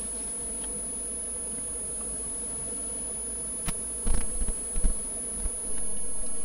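A steady low buzzing hum, with a single sharp click a little past halfway and a few dull low thumps soon after.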